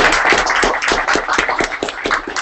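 Audience applauding: dense clapping from many hands.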